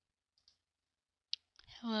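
A faint tick, then a single sharp click, with a voice starting to speak right after.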